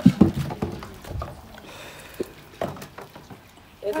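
Dishes being washed by hand in a plastic basin of soapy water: a few scattered knocks and clinks of plates and bowls, with a short laugh at the start.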